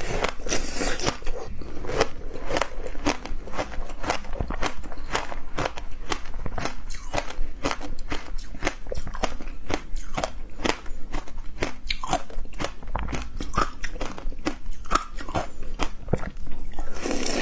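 Close-up biting, crunching and chewing of a frozen yellow passion-fruit treat, the seeds and ice crackling in dense, irregular clicks several times a second.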